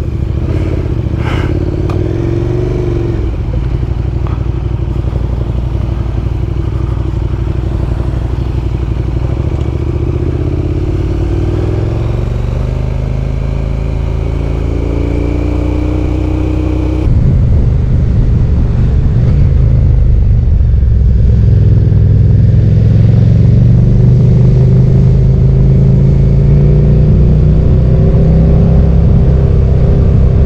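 Onboard sound of a KTM Super Duke GT's V-twin engine pulling away and riding a lane, its note rising and falling as the revs change. About halfway through the sound cuts abruptly to a louder, deeper engine run.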